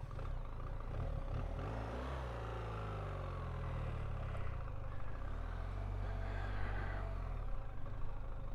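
A 2025 BMW R1300GSA's boxer-twin engine running as the bike is ridden, its note rising and falling a few times with the throttle.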